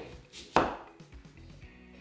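A chef's knife slices down through a whole onion, cutting it in half, and strikes the wooden chopping board with one sharp knock about half a second in.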